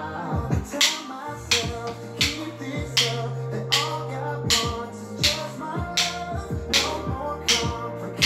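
A pop worship song with a steady beat, over sharp wooden clicks about every three-quarters of a second in time with it: drumsticks striking in a drumming workout.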